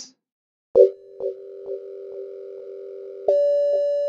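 Elevator arrival bell: two chime strikes about two and a half seconds apart, each ringing on and fading slowly. The second strike is higher and brighter. A faint pulse runs through the ring about twice a second.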